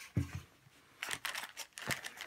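Plastic zip bag of wooden game cubes crinkling and clicking as it is handled and lifted out of a board-game box, after a soft knock just after the start.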